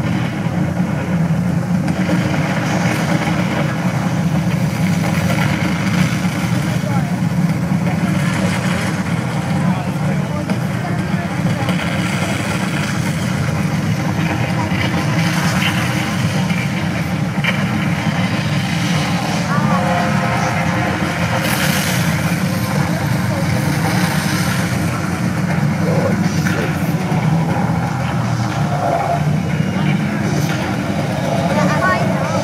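A steady, loud low rumble with indistinct voices mixed in.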